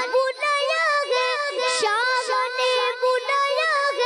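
A boy singing a naat, a devotional poem in praise of the Prophet, in a high voice with held notes that bend and waver.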